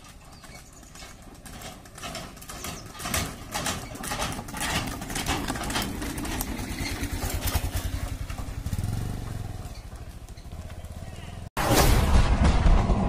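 Bullock cart going by at close range: the bullocks' hooves clop on the paved road in quick, uneven strikes, growing louder as the cart nears, with a low rumble from the cart's rubber-tyred wheels. Just before the end it cuts abruptly to loud music.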